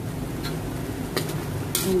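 A steel spatula on a wok of ground pork: a couple of light clicks, then a short, sharp scrape near the end as stirring begins, over a steady low hum.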